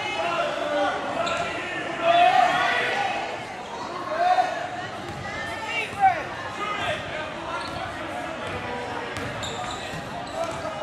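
Basketball dribbled on a hardwood gym floor during live play, with players' and spectators' voices and shouts echoing in a large gym; the shouts are loudest about two and four seconds in.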